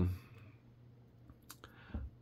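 A few small, sharp clicks of LEGO plastic parts in the fingers, coming near the end, as a minifigure is handled and taken apart.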